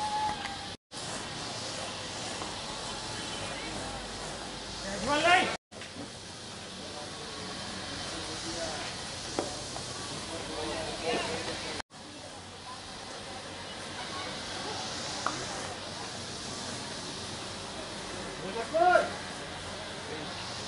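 Steady outdoor hiss with a few brief shouted calls from voices out on the field: a loud rising call about five seconds in and a shorter one near the end. The sound cuts out abruptly three times.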